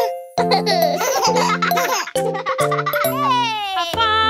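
Cartoon baby giggling and laughing over upbeat children's song music with a steady bass line. A falling glide is heard near the end.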